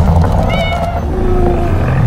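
A cartoon cat yowling in two short cries that slide in pitch, over a loud, deep rumble.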